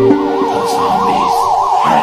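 A siren-like tone warbling rapidly up and down, about six or seven swings a second, over the held notes of background music.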